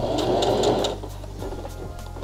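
Singer sewing machine stitching the edge of satin fabric, a fast run of stitches for about a second that then drops away.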